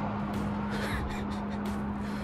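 A steady low hum, with a faint, short call, like a crow's caw, about a second in.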